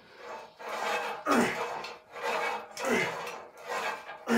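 A man breathing hard and rhythmically through cable reps, a rasping breath about every second, some with a short falling grunt.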